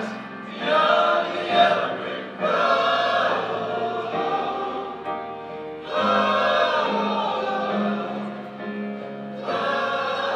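Male chorus of young men singing a pop song together in phrases with short breaks between them.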